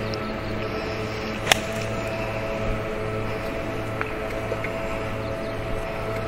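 A golf club striking the ball on a 75-yard approach shot: one sharp crack about a second and a half in, over steady background music.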